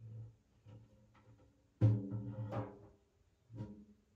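Large frame drum giving soft low thuds as it is handled and set down, then a louder boom about two seconds in that rings for about a second, and a smaller one near the end.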